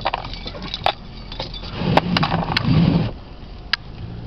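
A handful of sharp ticks and cracks, scattered irregularly, over a steady low rumble inside a car.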